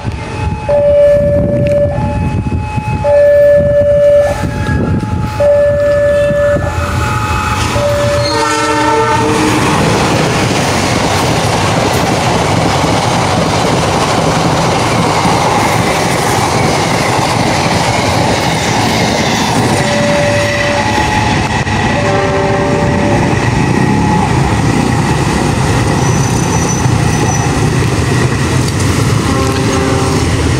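Indonesian passenger train (KA 116 Ranggajati) running straight through the station at speed. For the first several seconds loud two-note tones sound in repeated alternating blasts, ending in a fuller horn chord. From about nine seconds in comes a long, steady rush of the locomotive and carriages passing, with wheels clattering over the rail joints.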